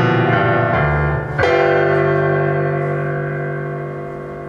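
Yamaha CP50 stage piano playing slow chords. A chord struck about a second and a half in is held and slowly fades.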